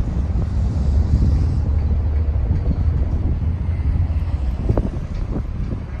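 Wind buffeting the microphone as a heavy, fluctuating low rumble, with a faint hum of road traffic behind it.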